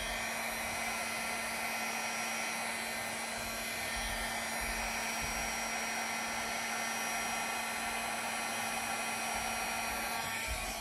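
Handheld hair dryer running steadily with a constant low hum, blowing wet acrylic pour paint outward across a canvas to form petals.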